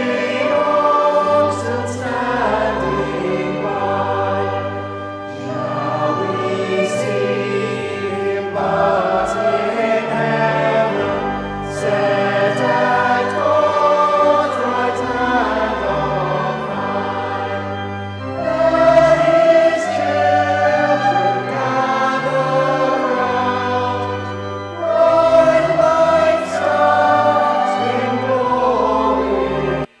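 Mixed choir singing a Christmas carol in harmony, over low held bass notes that change with the chords.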